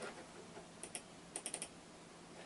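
Faint keystrokes on a computer keyboard: two taps a little under a second in, then a quick run of about four.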